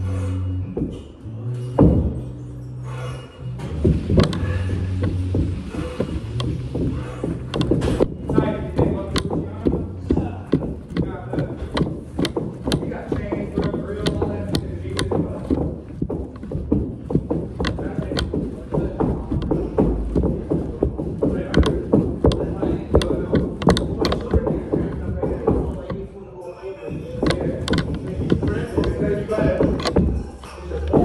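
Thick battle rope being whipped in waves, slapping the carpeted floor in a fast, irregular run of many slaps a second. The slapping eases off briefly about 26 seconds in, then picks up again.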